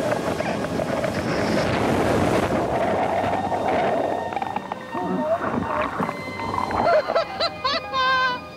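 Loud rush of seawater washing over the camera as a sea canoe is swamped by a breaking wave in rough sea, easing after about four and a half seconds. Music plays along underneath.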